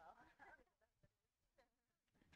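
Near silence, with a faint voice murmuring briefly at the start.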